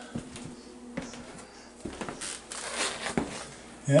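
Faint handling noise in a quiet room: soft rustles and a few light clicks, irregularly spaced, from a hand-held camera being moved about.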